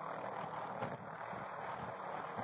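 Police helicopter running close by, a steady rushing noise picked up by a body-worn camera's microphone, with a brief knock from the camera moving just under a second in.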